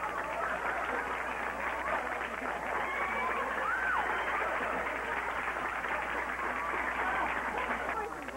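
A crowd clapping, with excited voices and exclamations over the applause.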